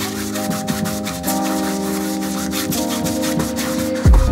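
Wide flat paintbrush scrubbing acrylic paint across stretched canvas in quick, repeated scratchy strokes, over background music of held chords.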